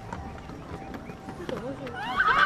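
Footsteps on the wooden plank deck of a suspension footbridge, with several people's voices chattering in the background.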